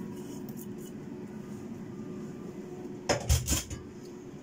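A steady low hum, then about three seconds in a short burst of knocks and clatter as kitchenware is handled on the counter.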